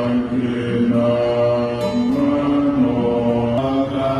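A group of Buddhist monks chanting together in unison: a low, steady drone of long held notes that step up and down in pitch.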